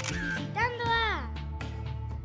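A camera-shutter click sound effect, then background music with a voice that slides down in pitch in a jingle-like phrase.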